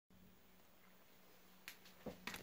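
Near silence: faint room tone with a steady low hum, broken near the end by a brief sharp click.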